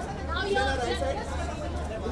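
Several voices talking over one another in Hindi: photographers calling out posing directions.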